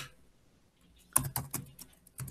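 Typing on a computer keyboard: after a second of quiet, a quick run of keystroke clicks as a word is typed into a document.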